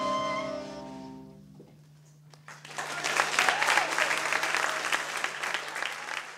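A chamber jazz ensemble's final held chord dies away over about a second and a half. After a brief hush, the audience breaks into applause about two and a half seconds in.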